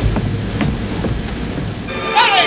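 Steady rushing noise with a deep rumble underneath and a few faint ticks.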